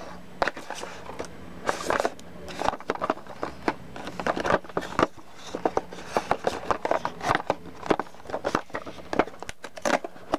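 Hands handling and turning a small cardboard box, with irregular rubbing, scraping and tapping of the card. Near the end, the box's perforated cardboard tab is torn open.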